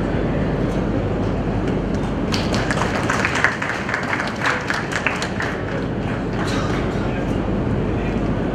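Short burst of applause from a small group clapping by hand. It starts about two seconds in and dies away after about three seconds, with a few last claps later, over a steady low rumble and murmur of voices in a hall.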